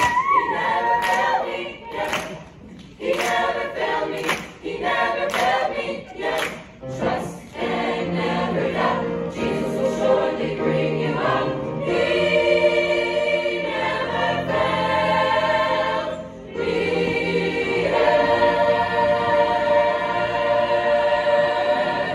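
A mixed school choir singing a gospel song a cappella. Hand claps keep a steady beat over the singing for the first several seconds, then the choir sings long held chords near the end.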